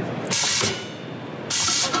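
Edlund air-powered can-top punch working: two short, loud hisses of compressed air about a second apart as it punches the top off a large can.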